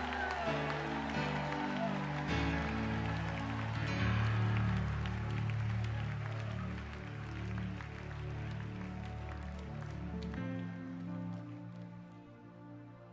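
Live worship music: sustained chords held over a bass line, with no singing. The bass drops out about ten and a half seconds in and the music thins and quiets.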